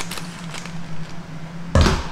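Scissors snipping through a plastic ice cream sandwich wrapper with a few faint clicks, then one loud knock near the end, over a steady low hum.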